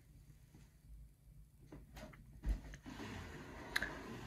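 A cardboard shoe box handled by hand: a few faint taps, then one sharp knock about two and a half seconds in, followed by a hand rubbing and rustling over the box's surface, with another tap near the end.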